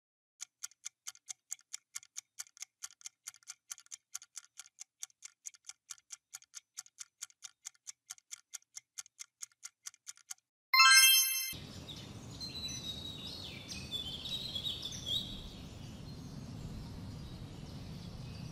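Quiz countdown timer ticking evenly, about four to five ticks a second for roughly ten seconds. Then a short, loud buzzer tone marks time running out, followed by a steady noisy background with high chirps over it.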